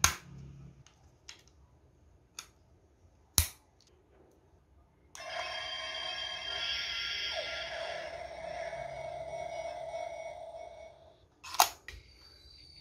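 Sharp plastic clicks from the DX Evoltruster toy as its parts are worked, then, about five seconds in, its electronic sound effect plays from the built-in speaker for about six seconds: several steady tones over a hiss, with a short falling sweep partway through. Another sharp click comes near the end.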